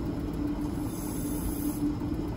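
Faint high hiss of air leaking in through a glass stopcock as a vacuum line is opened to the atmosphere to raise the pressure, lasting about a second in the middle, over a steady low mechanical hum.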